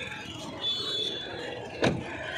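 Outdoor background hubbub with a brief thin high tone about half a second in, then a single sharp knock near the end.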